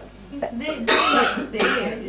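A person coughing or clearing their throat, two sharp coughs about a second in and half a second later, amid low indistinct voices.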